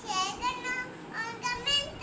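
A young girl singing in a high voice, in short phrases with a few held notes.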